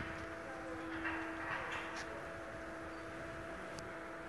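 A steady machine hum, with a few short rushes of noise about a second in and a sharp click near the end.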